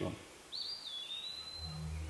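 A bird's single drawn-out whistled call, dipping at first and then holding steady. A low hum comes in near the end.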